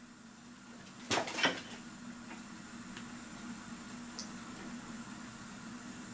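An electric plug pushed into an outlet, two quick knocks about a second in, then a faint steady hum as the Master Crafters Swinging Girl clock's motor starts running.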